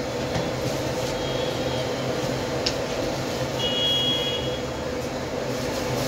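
Steady low mechanical drone with a constant hum, fairly loud throughout. There is a single click a little before the middle and a short high tone just after the middle.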